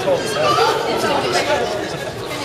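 Several people talking at once in lively greeting chatter, their voices overlapping.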